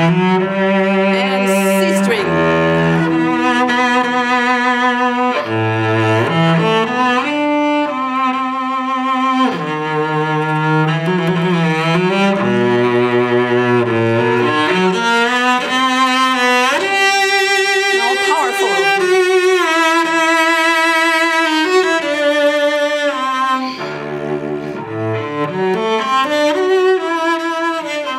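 A 1730 Carlo Tononi cello on Larsen strings, bowed solo in a slow, singing melody of long held notes with a wide vibrato, moving between low and high register.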